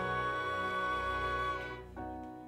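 Pit orchestra holding a sustained chord in a slow underscore, which fades away near the end.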